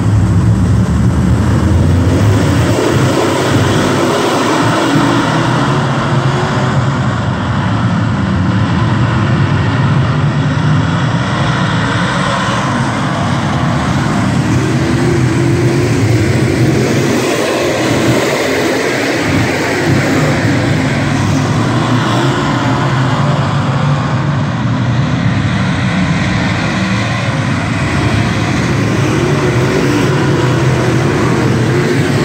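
A field of dirt late model race cars at racing speed just after the green flag, their V8 engines running together in one loud, continuous blend as the pack circles the track.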